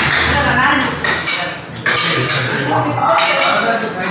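Metal spatulas chopping and scraping on the cold steel plate of an ice cream counter as fruit ice cream is mixed: a rapid, irregular metallic clatter with a sharper knock about two seconds in.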